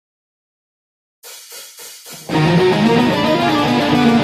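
Silence, then four soft evenly spaced taps like a count-in, then a Schecter Damien electric guitar starts playing a tune, loud and busy with many quick notes, about two seconds in.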